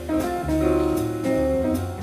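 Live jazz quartet playing: archtop electric guitar, double bass, keyboard and drum kit with cymbals.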